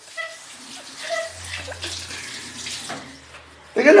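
Water splashing and sloshing in a plastic bucket as a cat is washed in it.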